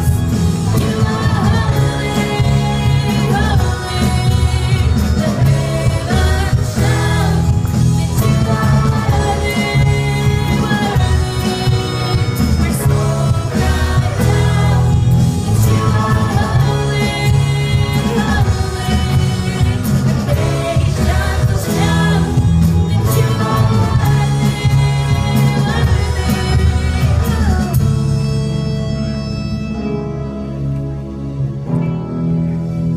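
Live worship band music with young female vocalists singing into microphones over electric guitar, keyboard and drums. Near the end the singing stops and the band carries on more softly.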